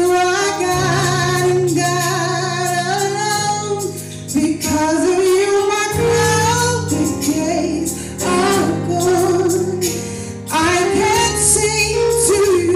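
Gospel praise song: a woman's lead voice sings long, sliding held notes into a microphone over sustained instrumental accompaniment.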